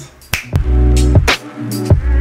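A single finger snap, then electronic music with a deep, heavy bass beat starts about half a second later.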